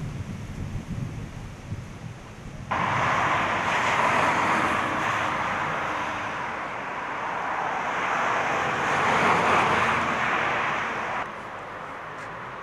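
Outdoor background noise: a steady rushing sound that cuts in abruptly about three seconds in, swells and eases, and cuts off abruptly near the end.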